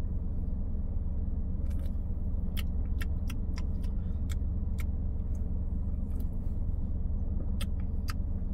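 A person drinking from an aluminium energy drink can, with a scattering of faint, irregular mouth and can clicks as she sips and swallows. Under it runs a steady low rumble in the car's cabin.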